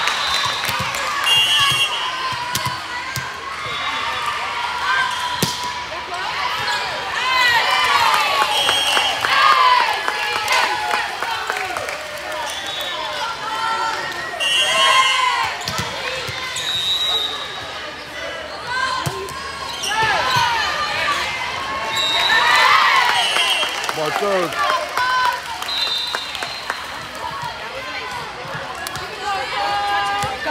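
Volleyball play on a hardwood gym court: a volleyball being hit and bouncing on the floor, short high squeaks from athletic shoes, and voices of players and spectators throughout, in a large hall.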